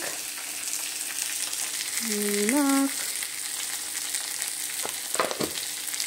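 Food sizzling steadily in hot oil in a kadai. A short voiced hum comes about two seconds in, and a couple of light clicks near the end.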